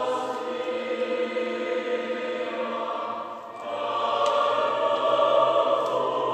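Choir singing in a church, with long held notes. A phrase ends about three and a half seconds in and the next begins louder.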